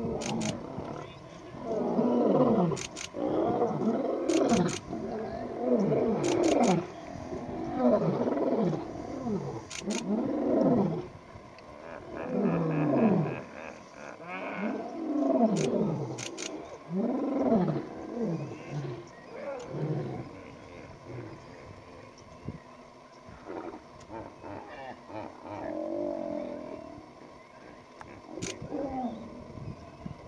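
Male lion roaring: a bout of deep calls, each sliding down in pitch, coming about one every second or so and dying away after about twenty seconds. A few sharp clicks are scattered through it.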